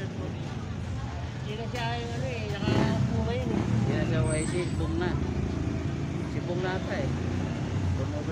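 Voices talking in the background over a steady low rumble of street traffic.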